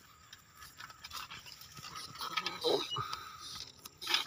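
Rustling and crackling of leaves, grass and stems as someone pushes through dense undergrowth, growing louder toward the end.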